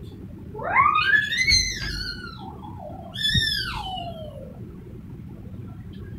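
A high-pitched human voice making two long gliding wordless calls, like a siren-style wail: the first rises and then falls, the second starts high and slides down. A brief low bump comes just as the second call begins.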